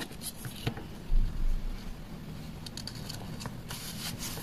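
Soft paper handling: light clicks and rustles of a paper sticker being handled and pressed onto a sketchbook page, with one dull low thump about a second in.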